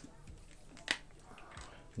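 A single sharp click about a second in, with faint rustling after it: small plastic spray bottles being set down and picked up on a tabletop.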